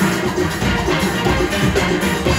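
A large steel band playing live: many steelpans struck together in a dense, continuous stream of ringing notes, with drums and percussion beneath.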